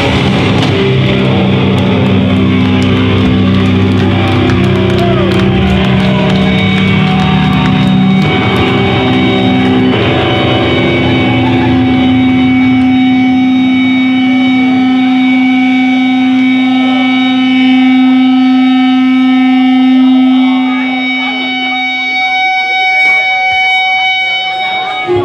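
A hardcore band's electric guitars and bass let the last chords ring out as sustained, steady tones after the drums drop out in the first seconds. A long held low note fades away about 22 seconds in, and crowd voices come up near the end.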